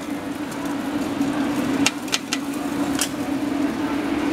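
Hawker-stall cooking noise: a steady low hum under a steady hiss, with a few sharp metal clanks about two and three seconds in, like a metal spatula on the flat griddle where fried carrot cake is frying.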